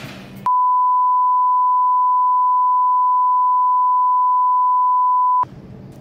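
One long, loud, steady electronic beep of a single pure tone, lasting about five seconds, edited in over the audio with everything else cut out beneath it: a censor bleep covering the speaker's words.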